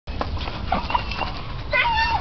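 A bull terrier hanging by its jaws from a spring pole's tyre, with a brief high, wavering whine near the end over a low steady rumble.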